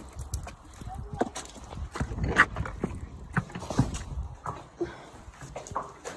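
Pony hooves knocking irregularly on a concrete walkway, mixed with footsteps and low thuds.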